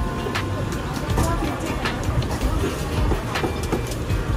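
Busy hawker-stall noise: a steady low rumble with background voices, broken by about half a dozen scattered sharp knocks and clatters from work at the counter.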